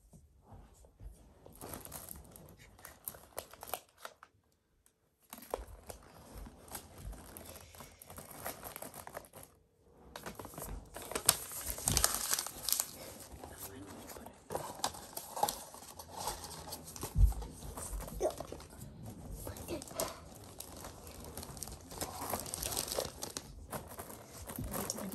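Plastic Oreo cookie package crinkling and rustling as it is handled, with scattered clicks and taps. The sound drops out briefly twice.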